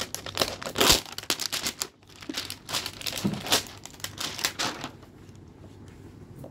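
Packaging on a toy box crinkling and tearing as it is pulled open by hand: a quick run of short crackling rustles that dies down about five seconds in.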